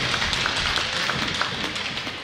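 Applause from a crowd in an ice arena, a mass of hand claps with single claps standing out; it begins to fade toward the end.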